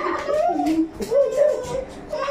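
A high-pitched, drawn-out human voice, wavering up and down in pitch, with short breaks between sounds.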